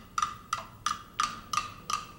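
Wood block struck in an even beat, six hollow knocks at about three a second, as a percussion accompaniment to a walk.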